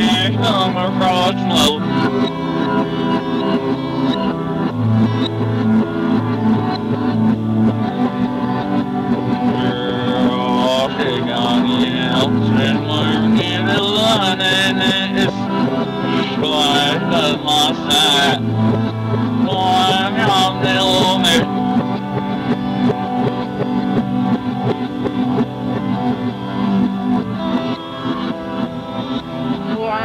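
Lo-fi music from a cassette tape rip: sustained low notes under a wavering, pitch-bending melody, with a hint of plucked string.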